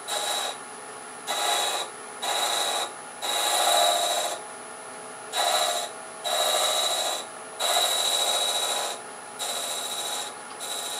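Half-inch spindle gouge taking light cuts on a wooden piece spinning on a lathe, cutting a small chamfer: about eight short scraping passes, each up to a second long, with the lathe running quieter between them.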